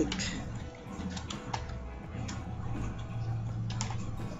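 Computer keyboard being typed on: a handful of irregularly spaced keystroke clicks as a line of code is entered.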